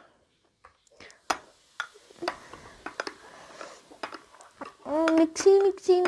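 A metal spoon clicking and scraping against glass at irregular moments while stirring. Near the end a boy's voice starts a repeated sing-song chant.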